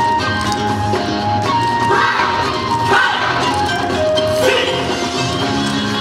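Yosakoi dance music playing: a held melody line over a steady beat.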